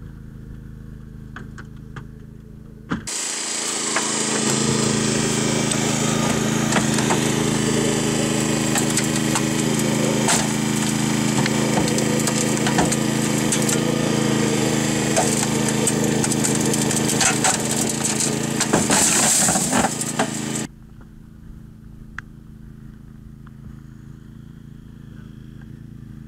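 Engine-driven hydraulic power unit running loudly while a hose-fed Holmatro hydraulic cutter works through a car's pillar, with sharp cracks and pops of metal giving way. It starts suddenly about three seconds in and stops abruptly about three seconds before the end, leaving a quieter steady hum.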